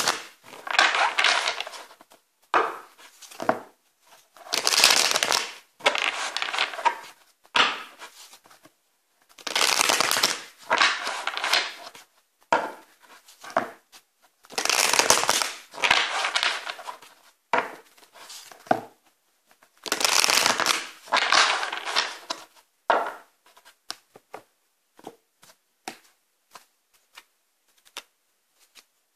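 A deck of tarot cards being shuffled by hand: loud rustling bursts of a second or two, several times over, thinning to sparse light clicks of the cards in the last few seconds.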